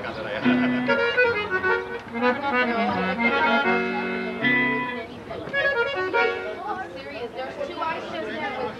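Live conjunto music: a button accordion plays a melody of held and moving notes over the strummed bajo sexto and bass notes.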